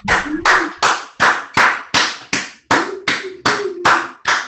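One person clapping hands in a steady rhythm, a little under three claps a second.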